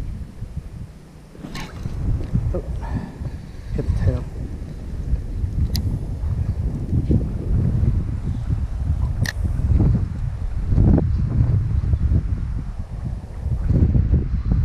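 Wind buffeting the microphone, a steady low rumble, with two sharp clicks about six and nine seconds in.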